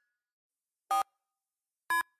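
Two short electronic beeps, a cartoon game sound effect, about a second apart. Each marks the highlight stepping to the next silhouette while the game checks where the car fits.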